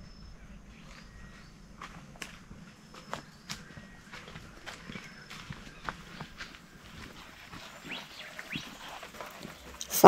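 Footsteps of two people walking on a dry dirt path scattered with leaves: irregular soft crunches and clicks, growing a little louder as they come closer.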